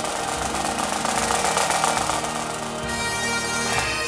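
Scottish pipe band: Great Highland bagpipes playing under a dense drum rattle that stops about three seconds in, leaving the pipes' steady drones and chanter on their own.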